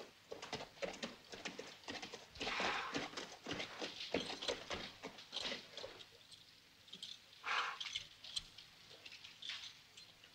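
Horse's hooves galloping on dry, dusty ground and slowing as the horse is reined to a halt. Two short breathy rushes stand out, about two and a half and seven and a half seconds in.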